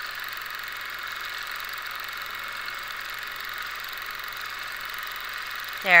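Longarm quilting machine stitching at an even speed, a steady mechanical whir.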